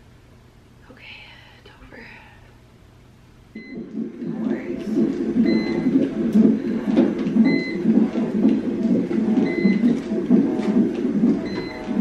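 A hospital delivery-room monitor beeping once about every two seconds over voices. Before it there are a few quiet seconds with a faint breath.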